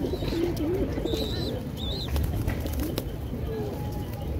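A flock of pigeons cooing, several low coos overlapping throughout, with scattered sharp clicks mostly in the second half.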